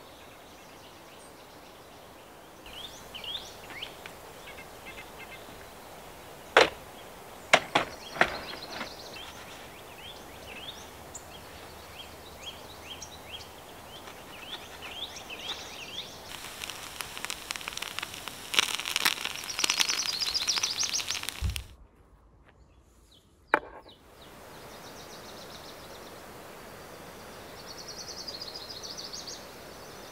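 Small birds chirping and singing in the background. A few sharp knocks of things being handled come about six to eight seconds in, and a stretch of dense crackling rustle comes later. About two-thirds of the way through, the sound drops briefly to near silence with a single click, then the birdsong returns.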